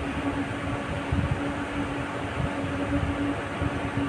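A steady background hum with one constant tone under an even noise, with soft irregular handling knocks and rustles as wire leads are twisted onto a ceiling-fan stator's coil terminals.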